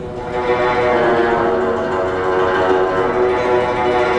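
Guzheng (Chinese zither) being played solo, the texture thickening and growing louder about half a second in, with many plucked notes ringing together.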